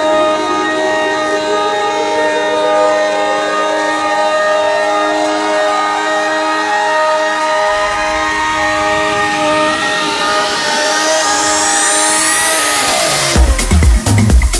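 House remix breakdown: sustained synth chords with a rising synth sweep building over about nine seconds, then the kick drum and bass drop back in just before the end.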